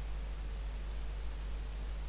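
Two light computer mouse clicks about a second apart, over a steady low hum.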